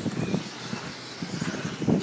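Radio-controlled cars running on a dirt race track: a faint high motor whine that shifts in pitch, over an irregular low rumble.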